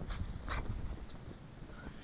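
A dog bounding through deep snow, with two short, sharp noisy sounds, one at the start and one about half a second in, over a low rumble.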